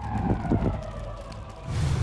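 Dramatic promo-trailer sound effects: a deep rumble under a tone that slides slowly downward, with a couple of short hits about half a second in and a swell building near the end.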